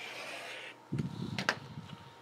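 Rotary cutter blade rolling through stacked cotton fabric along an acrylic ruler, a short scratchy rasp. It is followed by the acrylic ruler being dragged across the cutting mat with a low rustle and a couple of sharp clacks.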